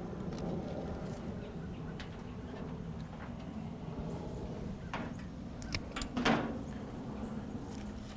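Flower stems and foliage rustling softly as they are tucked into an arrangement, over a faint steady background hum, with a few short clicks and rustles in the second half.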